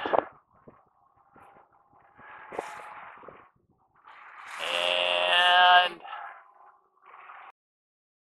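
A man's voice making a drawn-out wordless sound, like a hum or a long 'uhh', about four and a half seconds in. A shorter, quieter vocal sound comes around two to three seconds in, with quiet between.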